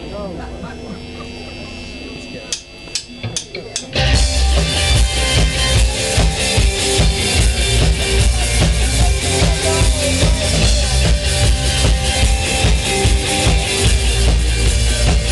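Live band with drum kit, bass and electric guitars: low crowd talk and four quick evenly spaced clicks of a count-in, then about four seconds in the full band comes in loud with a steady driving drum beat.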